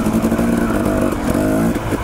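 Dirt bike engine running as the bike rides along narrow single track, its pitch dipping and rising a little twice as the throttle is worked.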